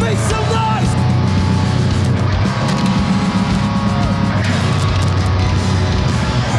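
Live rock band playing loud, distorted heavy rock on electric guitar, bass guitar and drum kit, going without a break.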